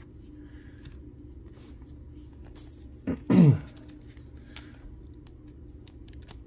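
A man clears his throat once, a short loud rasp about three seconds in. Around it are a few faint clicks and rustles of trading cards being handled and slid into a plastic sleeve.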